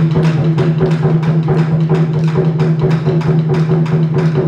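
Japanese taiko drums played in a fast, even stream of stick strokes, with sharp clicks from the sticks over a sustained low ring from the drums.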